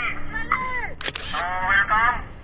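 Men's voices, with a short burst of hiss about a second in, at a cut in the video: a camera-shutter-like editing transition effect.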